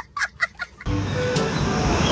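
A young child laughing hysterically in rapid, high-pitched bursts, about six a second, which break off about a second in. A steady rushing noise follows.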